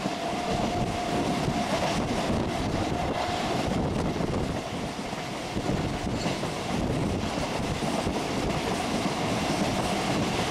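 Local passenger train running at speed, heard from its open door: a steady rumble of wheels on the rails with scattered clicks at rail joints. A steady whine is heard for the first few seconds, then fades.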